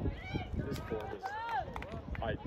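Several high-pitched voices shouting and calling out over one another across a soccer field during play, with one long rising-and-falling call in the middle, over a steady low rumble.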